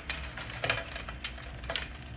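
Light handling noises from a glass terrarium and its mesh lid as the tank is tipped upright: faint scattered ticks and a couple of soft scrapes, with loose crumbs of dried soil trickling down onto the glass.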